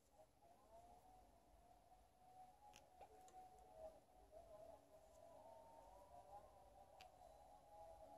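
Near silence: a faint, wavering tone in the background, with a few faint clicks.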